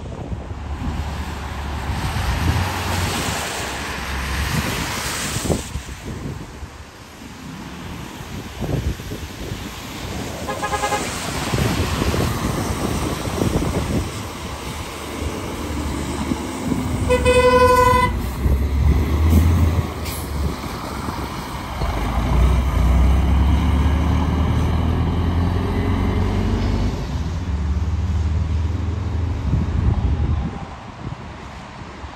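Transit buses driving through a car park, engines rumbling low and rising as they pull away. A faint short horn toot comes about a third of the way in, and a louder horn blast of about a second a little past the middle.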